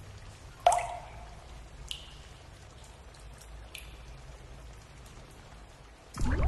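Water dripping into water, three separate drops. The first, just over half a second in, is a loud plink whose pitch drops quickly; two fainter, higher drips follow near two and four seconds, over a low steady hum.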